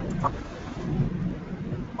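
Low rumbling noise on a web-conference audio line, part of the call's audio problems, with a brief voice fragment about a quarter of a second in.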